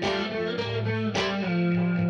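Electric guitar played through effects over layered guitar loops: sustained notes ring together, with new picked notes struck at the start and again about a second in, and a lower held note joining about half a second in.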